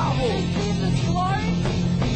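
Loud rock-style worship band music, with sliding high notes over steady low bass notes.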